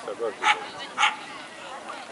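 A dog barking twice, short sharp barks about half a second and a second in.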